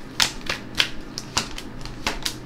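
Tarot cards being shuffled by hand: a series of sharp card snaps, two or three a second.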